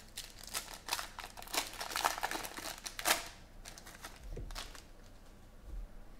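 Foil wrapper of a trading-card pack crinkling as it is torn open by hand: a dense run of crackles over the first three seconds, then a few more about four seconds in.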